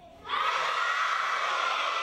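A crowd of children shouting together in one long, loud yell that starts suddenly about a third of a second in.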